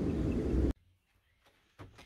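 Wind buffeting the microphone, a low rumble that cuts off suddenly under a second in, leaving near silence with a faint knock near the end.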